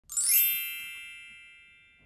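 A bright, bell-like chime that opens with a quick upward shimmer, then rings out and fades away over about two seconds.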